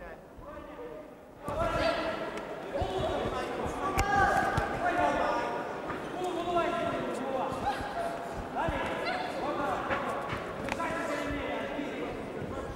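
Voices shouting in a large hall, starting about a second and a half in, over scattered sharp thuds of boxing punches and footwork on the ring canvas.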